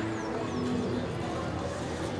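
Birds calling, with a few short high falling chirps near the start, over a low background of music and voices.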